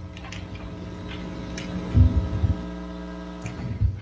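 Steady electrical hum on an open audio line, with a few faint clicks and low bumps about halfway through and again near the end.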